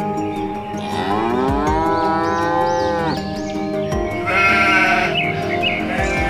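A cow's moo sound effect over background music: one long call that rises in pitch and then holds, stopping about three seconds in. A shorter, higher, wavering bleat follows later.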